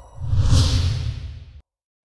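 Whoosh sound effect with a deep rumble under it, swelling quickly about a quarter second in and then fading away, accompanying an animated logo intro.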